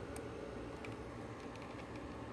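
A few faint computer mouse clicks, one near the start and a small cluster around the middle, over a low steady room hum.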